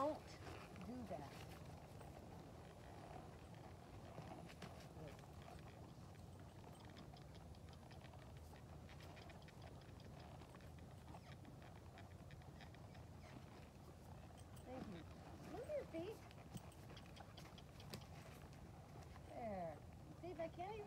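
Faint hoof steps of a horse moving on bare dirt, over a steady low background noise.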